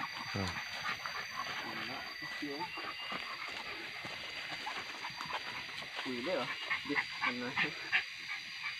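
Hunting dogs giving short, scattered whines and yelps.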